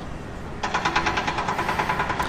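An engine starts running nearby about half a second in, with a fast, even pulse of roughly ten beats a second.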